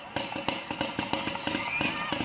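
A rapid, irregular string of sharp pops, heard as gunfire in the stadium footage, over faint crowd voices.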